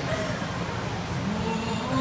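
A woman's voice from a pre-show video soundtrack, pausing and then resuming about one and a half seconds in, over a steady low background rumble.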